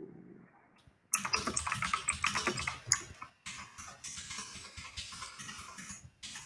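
Typing on a computer keyboard: a quick, uneven run of keystroke clicks starting about a second in, with a short pause a little past the middle.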